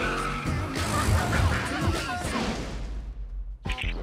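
Trailer music mixed with the sound of a car, its tyres skidding.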